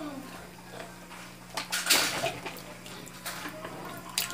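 Tomato sauce poured from a carton into a metal pot of pumpkin stew, then a spoon stirring and scraping against the pot: a few soft scrapes and clinks, the loudest about two seconds in, over a low steady hum.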